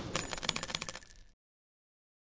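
Sound effect of spent shell casings clinking and rattling down after a burst of gunfire: a quick run of metallic clinks with a high ringing that fades out after about a second.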